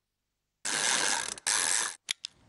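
Sound effects of an animated TV channel ident: after a brief silence, two dense noisy bursts, the first about three-quarters of a second long and the second about half a second, each cut off abruptly.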